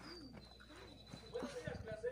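Faint cooing of a dove: a few short, soft coos rising and falling in pitch, mostly in the first second.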